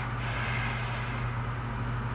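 A single breath out, about a second long, over a steady low background hum.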